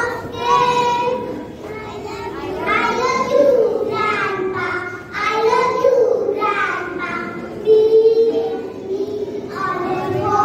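A group of young girls singing a song together, led into a microphone, with drawn-out sung notes.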